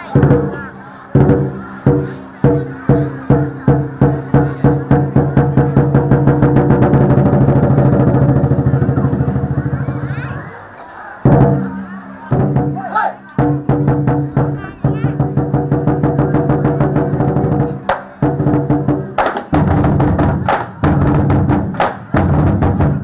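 A troupe of large festival barrel drums being beaten. Single strokes speed up into a fast, continuous roll, which breaks off about ten seconds in. The drumming then picks up again in a quick, steady beat.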